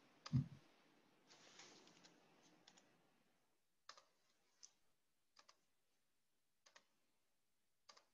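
Near silence with a short low thump just after the start, then faint, scattered clicks about a second apart from someone working a computer.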